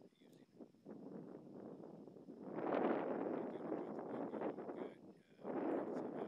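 Wind gusting across a Canon Vixia camcorder's built-in microphone: an uneven rushing noise that builds, is loudest about two and a half seconds in, eases, and surges again near the end.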